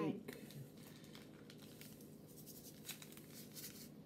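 Faint crinkling of small plastic bags of crystal granules being handled and tipped into a plastic mold, as scattered light rustles that come more often in the second half.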